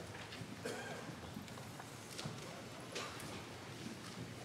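Faint rustling and scattered light knocks of people handling and leafing through books, looking up the announced psalter number.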